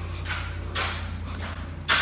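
Sandals scuffing on a concrete garage floor as a person walks, three shuffling steps, over a steady low hum.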